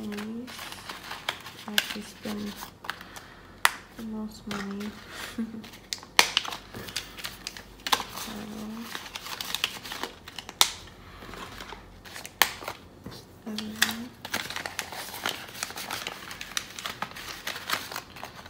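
Paper banknotes and plastic cash envelopes being handled: crinkling and rustling, with many sharp clicks and taps throughout. A few brief murmured voice sounds come in between.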